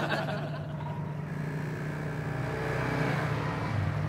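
A motor vehicle engine running steadily, getting a little louder toward the end.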